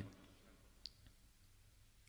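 Near silence: room tone, with a single short faint click a little under a second in.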